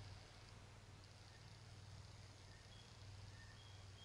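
Near silence: room tone with a steady low hum, and a few faint, brief high-pitched tones in the second half.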